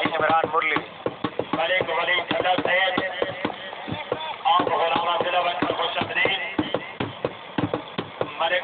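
Voices of people talking, with many short sharp clicks or knocks scattered through.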